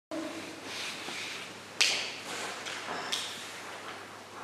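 Room sound of performers moving behind a shadow-play screen: rustling and shuffling, with a sharp knock about two seconds in, the loudest sound, and a smaller knock about a second later.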